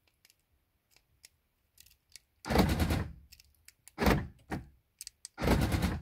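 Central locking of a 2004 Mercedes E500 (W211) worked from the key-fob remote: the door lock actuators drive the lock knobs three times, about a second and a half apart. Each is a loud thunk lasting about half a second, with a few faint clicks before the first.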